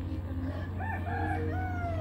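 A rooster crowing once, starting about a second in, its pitch falling away at the end, over a steady low hum.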